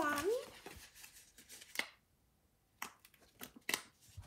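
Paper sticker sheets being handled, rustling and crinkling in several short crackles, mostly in the second half.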